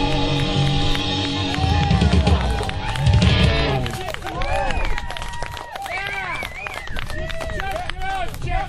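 Live rock band with electric guitar and drum kit ending a song: held chords and heavy drum hits build and stop about four seconds in. Then the listeners whoop and shout.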